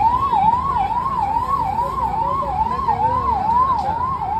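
Siren wail, a single tone sweeping up and down a little over twice a second, starting suddenly.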